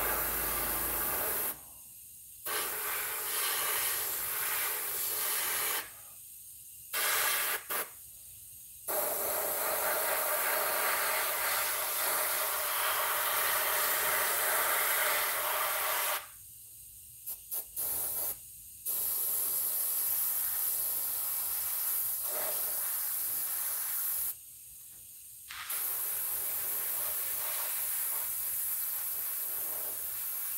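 Airbrush spraying paint with a steady hiss of air, which cuts off abruptly and starts again about five times.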